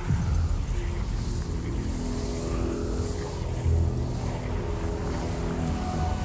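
Low, steady rumbling sound effect for swirling magical energy, beginning suddenly with the cut. Sustained music notes come in over it about two seconds in.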